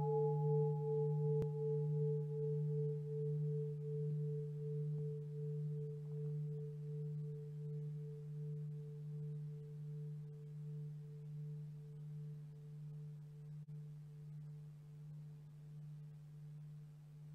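Large bronze bowl bell ringing on after a single strike: a strong low tone with a fainter higher tone above it, slowly fading, its loudness pulsing with a slow regular waver.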